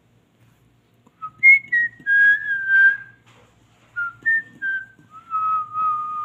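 Pet parrot whistling two short phrases of clear notes. Each phrase jumps up and then steps down in pitch, ending on a longer held note.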